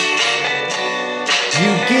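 Pop band music with guitar chords between sung lines, and the lead vocal coming back in near the end.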